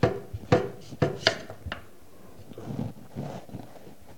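A large kitchen knife cutting through a raw, hard sweet potato and striking a wooden cutting board: about five sharp chops in the first two seconds, then softer handling sounds.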